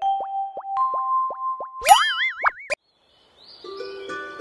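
Cartoon logo jingle: a quick run of short plinking notes over a held tone, then a rising, warbling whistle-like glide that cuts off abruptly. After a brief silence, a soft background sound fades in near the end.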